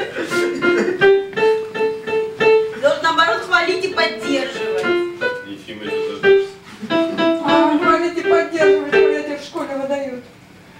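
An electronic keyboard played by hand: a melody of short separate notes, a few per second, with fuller note clusters in places, stopping just before the end.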